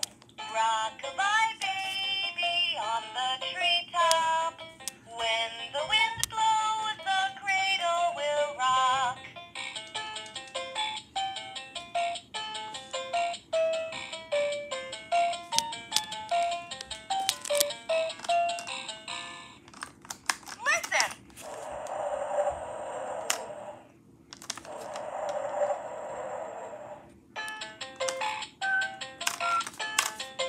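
VTech Rhyme and Discover Book's toy speaker playing an electronic voice singing a nursery rhyme, then a melody of short stepped electronic notes. Two bursts of hissing noise come past the midpoint, and then the notes start again.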